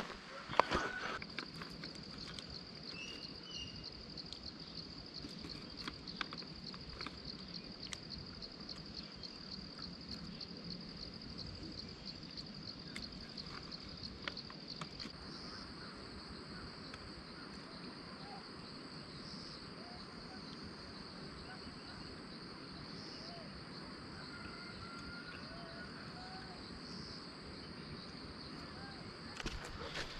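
Insects droning steadily at a high pitch in hillside forest. About halfway through, a second, even higher insect drone joins, dipping every four seconds or so. Scattered light clicks sound in the first half.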